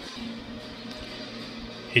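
Quiet music playing from a television in the room, steady through the moment, with no other distinct event.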